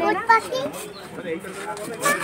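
Voices of children and adults talking, with a short word called out at the start and quieter chatter after it.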